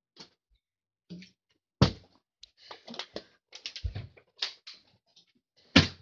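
Knocks and clatters of a partly filled plastic water bottle being handled and flipped, with two sharp thuds, one about two seconds in and one near the end as the bottle lands.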